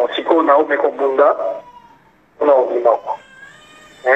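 Speech only: a voice speaking in two short phrases with a pause between them.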